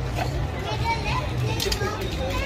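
Outdoor crowd chatter: many adults' and children's voices talking and calling over one another, with a steady low hum underneath.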